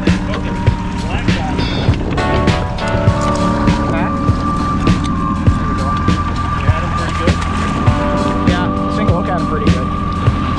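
A boat's outboard motor running steadily at trolling speed, with a knock about every half second. Music plays at the same time.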